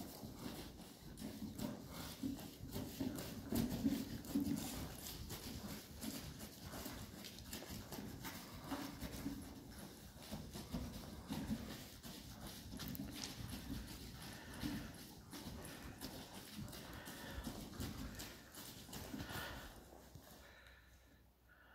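Horse walking on the sand footing of an indoor arena, with a run of soft, irregular hoofbeats. A plastic container is dragged behind on a rope and scrapes over the sand. The sound fades near the end as the horse comes to a halt.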